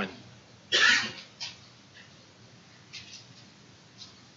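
A single cough about a second in, loud and brief, then only faint room noise with a couple of small clicks.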